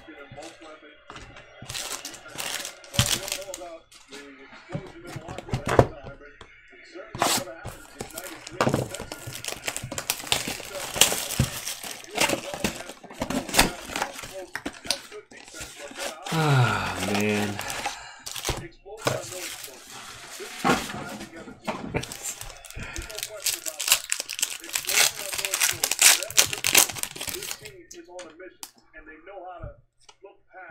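Sports card packs being torn open by hand: wrappers crackle and crinkle, with card packaging and cards being handled.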